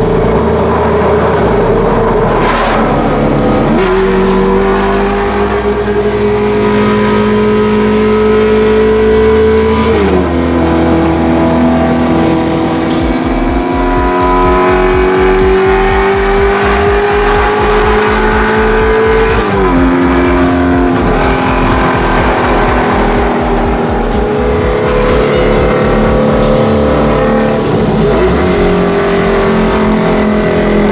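Ferrari F430 Spider's V8 engine, heard from inside the cabin, pulling along the expressway. Its note climbs slowly, then drops sharply at an upshift, twice: about a third and about two thirds of the way in.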